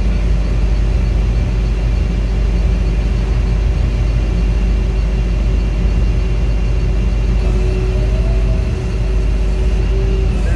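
A diesel engine running steadily, a continuous low rumble with a constant hum over it.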